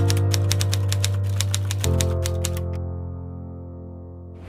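Typewriter key-click sound effect, about six clicks a second, stopping a little under three seconds in. Under it is background music holding a low sustained chord, which shifts about two seconds in.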